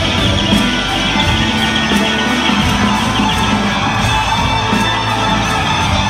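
Live rock band playing electric guitars and drums in a large hall, loud and steady, heard from among the audience.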